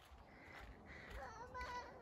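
Faint, distant voice of a small child, a brief high-pitched call or babble about a second in, over very quiet background.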